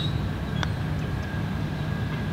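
A single light click of a putter striking a golf ball, a little over half a second in, over a steady low rumble.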